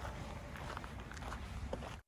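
Footsteps on a sandy, gravel-strewn trail over a low rumble on the microphone, cutting off suddenly at the end.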